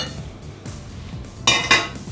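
A quick cluster of ringing clinks from dishes and utensils being handled, about one and a half seconds in, over background music.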